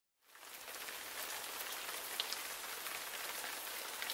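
Steady rain falling, with a few faint drips standing out. It fades in from silence in the first half second.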